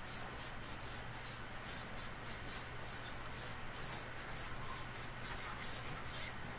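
Marker pen writing on a flip-chart pad on an easel: an uneven run of short, high scratchy strokes, about two a second.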